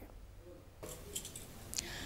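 A quiet gap of faint room tone, with a few soft clicks about a second in, then a short breath drawn in near the end.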